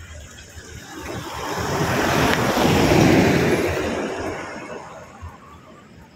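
A road vehicle passing by. Its noise swells to a peak about three seconds in, then fades away.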